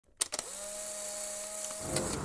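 A few quick clicks, then a steady electronic whine over a hiss that swells slightly near the end.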